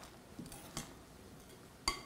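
Metal spoon stirring grated-potato dough in a glass bowl, clinking against the glass: a few faint ticks, then one sharper clink near the end.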